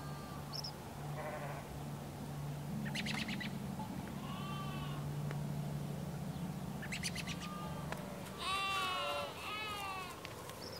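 Farm ambience: a livestock bleat, the loudest sound, about eight and a half seconds in, with a shorter call right after it. Bird chirps and trills are scattered through, over a steady low hum.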